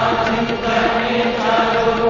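Devotional bhajan: voices chanting together over a steady drone, with no single lead voice standing out.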